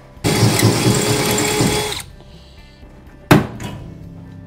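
Cordless drill running for about two seconds as it bores a rivet hole in the aluminum boat's framing, then stops. A little over a second later comes one sharp, loud crack.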